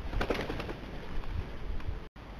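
A Eurasian magpie taking off from a feeding platform: a short flurry of wing flaps in the first half second or so.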